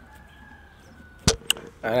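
Two sharp clicks about a quarter second apart, then a man starts speaking close to the microphone. A faint high tone, falling slightly, lies under the first second.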